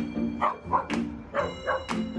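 A dog barks four short times, in two pairs, over background music with a steady beat.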